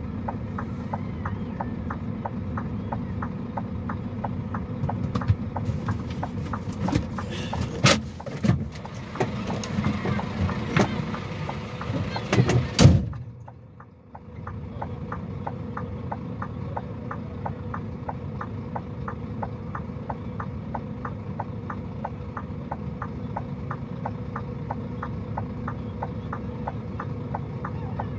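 Vehicle idling with a steady low rumble and a regular ticking, about three ticks a second. Between about five and thirteen seconds in, louder irregular noise and sharp knocks rise over it, then cut off suddenly.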